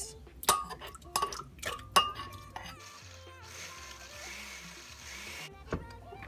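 A metal fork scraping and clinking against a bowl and the rim of a glass blender jar as chunky ingredients are tipped in, with several sharp clinks in the first two seconds. A steady hiss-like noise follows for about three seconds and cuts off suddenly.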